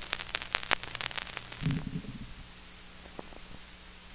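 Vinyl 45 rpm single playing on past the end of the song: sharp crackles and pops from the stylus in the groove, a short low thump about two seconds in, then steady surface hiss with a faint hum.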